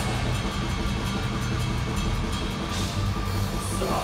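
Metal band playing live at full volume: heavily distorted electric guitars over fast, steady drumming with cymbals.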